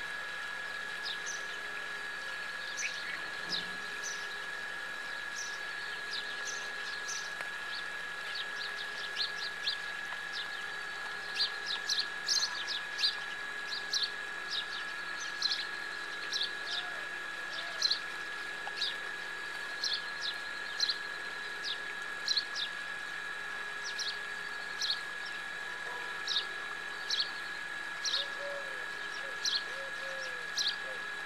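Small birds chirping: short high chirps repeating about once a second, growing more frequent and louder partway through, over a steady high-pitched whine.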